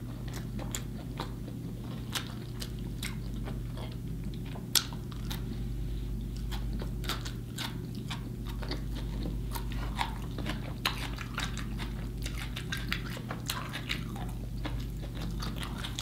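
Close-miked chewing of raw onion strips, with many small sharp mouth clicks and light crunches, over a steady low hum.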